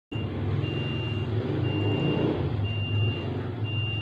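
An electronic beeper sounding a single high tone about once a second, each beep about half a second long, over a steady low hum.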